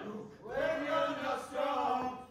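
A group of men singing a song together in unison, on long held notes, with a short break about half a second in.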